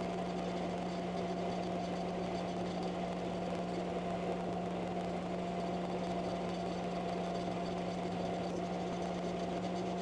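Thunder Laser Bolt CO2 laser engraver running a raster engrave on a glass mug held in a rotary: a steady machine hum with a constant low drone and a higher whine as the head sweeps back and forth.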